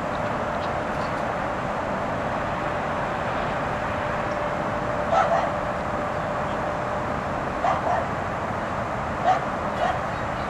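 A dog barking briefly four times, from about halfway in, over a steady background hiss.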